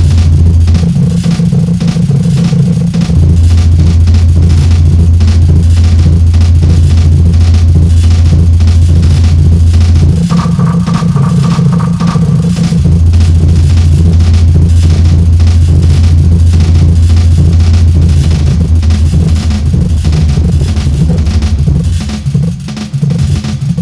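Roland MC-808 groovebox playing a heavily tweaked hip hop preset: a loud, heavy bass drone held in long stretches that drops out briefly a few times, under fast, dense ticking percussion. A short higher-pitched tone comes in about halfway through.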